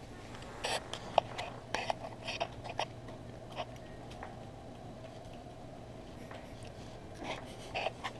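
A knife spreading peanut butter on a slice of bread on a paper plate: a quick run of short soft scrapes and clicks in the first three seconds, a few more later, over a steady low hum.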